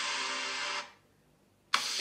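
Sustained whooshing sound effect with faint held tones from the DNA-results reveal animation. It fades out just under a second in, leaving dead silence.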